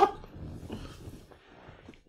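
A man groaning in disgust, a sound that tails off and fades over about a second and a half.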